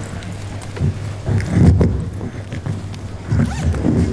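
A clip-on lapel microphone being handled and repositioned at a shirt collar: loud rubbing and bumping of fingers and fabric against the mic, in uneven spells, loudest a little before halfway.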